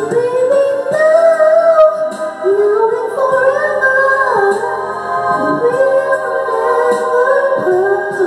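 A woman singing a slow melody into a handheld microphone, holding long notes that slide up and down, over steady lower accompanying notes.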